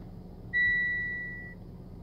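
A single electronic chime from the Mitsubishi Lancer Ralliart's dash, typical of the warning chimes the car sets off while its ECU is being flashed. One steady high tone starts about half a second in and fades away over about a second.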